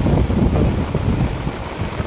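Wind buffeting a phone's microphone outdoors, an uneven low rumble that rises and falls.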